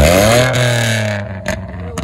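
Volkswagen Polo engine through an aftermarket twin-tip exhaust: a blip of the throttle dies away, the revs falling over about a second and settling into a steady idle, with a sharp click about one and a half seconds in. The engine is still cold, which the owner gives as the reason the exhaust is not yet crackling.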